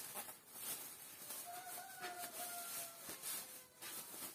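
Clear plastic bag crinkling and rustling as it is pulled and stretched off a PC case. About one and a half seconds in, a rooster crows once, faintly, for about a second.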